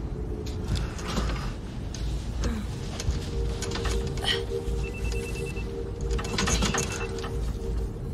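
Electronic phone ringing as a rapid trill in two short rings about a second apart, answered right after, over a sustained low musical drone.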